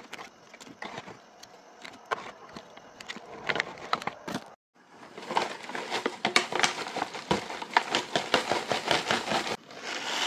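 A plastic zip pouch crinkling as it is handled and opened. After a brief gap about four and a half seconds in, dried herbs pour from the pouch into a stainless steel pot with a dense crackling rustle.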